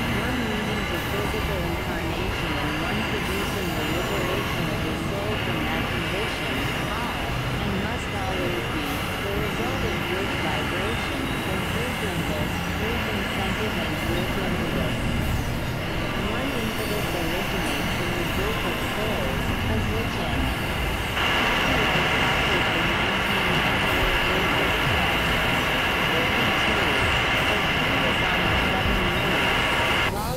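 Experimental electronic noise music from synthesizers: a dense, steady drone of stacked high tones over a churning low rumble, with warbling pitch squiggles in the middle. About two-thirds of the way through, the high tones swell and the whole sound gets a little louder.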